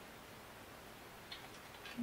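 Quiet room tone with a few faint, light clicks about one and a half seconds in.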